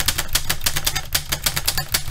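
Rapid, even clatter of sharp clicks, about a dozen a second, over a low hum, like a typewriter being typed fast.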